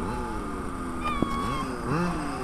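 Small remote-control car's motor whining, its pitch rising and falling several times as the throttle is worked. A single sharp click comes a little after a second in.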